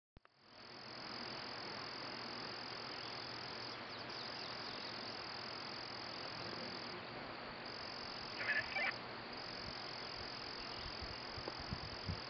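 A faint, steady, high-pitched chorus of calling animals from the surrounding woods and field, with a short louder call about eight and a half seconds in.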